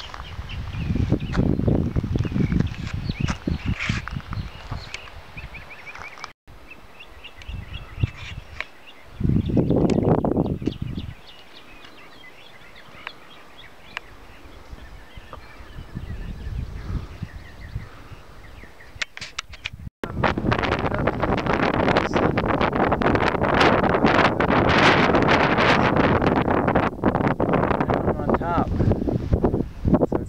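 Wind buffeting the microphone in gusts, with faint bird calls in a quieter stretch in the middle. The last third is a louder, steady rushing noise.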